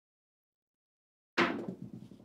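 A pair of dice thrown onto a craps table: a sharp first impact, then about a second of quick, decaying clatter as they tumble and come to rest. The sound starts suddenly over a second in, after silence.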